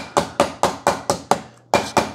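Hamilton Beach Fresh Grind coffee grinder giving a rapid, even string of short, sharp bursts, about four a second, with a brief gap near the end.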